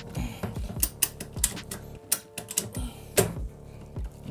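Ratchet tie-down strap being cranked tight: a run of sharp, irregular clicks, over faint background music.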